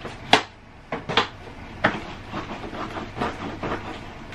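Knocks and clunks from an Inmotion V11 electric unicycle being pushed down and bounced on its air suspension, the loudest about a third of a second in, with several more spaced through the rest.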